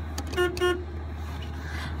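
A short car-horn toot about half a second in, over a steady low engine hum heard inside a small moped car's cabin.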